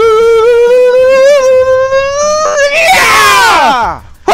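A man's long held yell, rising slightly in pitch for about two and a half seconds, then breaking into a harsh scream that falls steeply in pitch and cuts off just before the end.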